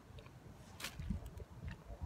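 Faint wind buffeting the microphone in low, irregular gusts, with a single sharp click a little under a second in.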